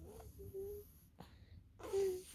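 A baby making short, soft breathy coos, with a louder coo near the end.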